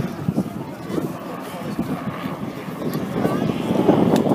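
Bell 206 JetRanger helicopter flying past at a distance, its single turbine and two-bladed rotor heard as a steady running sound, with indistinct voices of people nearby.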